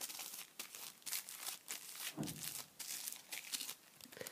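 Oil-blotting (anti-shine) paper crinkling and rustling in irregular crackles as it is handled and dabbed over the face to take off shine.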